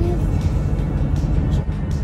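Steady low rumble of a car's engine and tyres heard from inside the cabin while driving.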